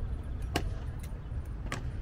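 Honour guard's boots striking stone pavement in a slow goose step: two sharp stamps a little over a second apart, over a steady low rumble.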